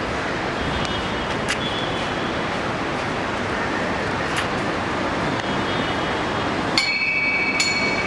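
Steady background noise at a busy entrance, with a few light clicks. About a second before the end, a steady high-pitched tone with a higher overtone comes in.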